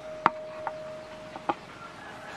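Carved wooden miniature car body knocking against its wooden base board as the pieces are set together by hand: four light wood-on-wood knocks, the first the loudest.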